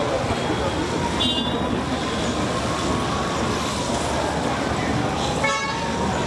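Steady outdoor hubbub of voices and traffic, with two brief horn-like toots, one about a second in and one near the end.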